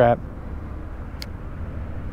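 Wind buffeting the action camera's microphone, a steady low rumble, heard over a kayak on open shallow water. The end of a shouted exclamation cuts off at the very start, and there is one faint click about a second in.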